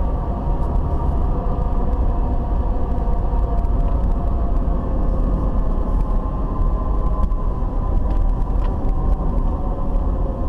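A car heard from inside its cabin while driving: a deep, steady rumble of engine and road noise with a hum whose pitch sags slightly about halfway through.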